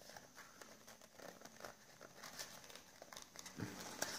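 Faint rustling and crinkling of folded origami paper as its points are pressed and tucked in to lock a modular rose cube together, with small scattered crinkles.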